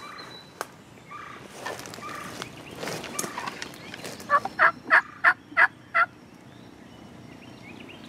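A wild turkey gobbler gobbles once, loud and close, a rapid rattle of about six notes starting a little past halfway. Softer, shorter calls come in the seconds before it.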